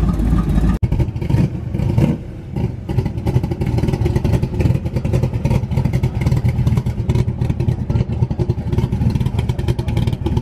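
Shelby Cobra-replica roadster's V8 engine running at low speed as the car rolls past, a loud, fast, uneven pulsing exhaust note.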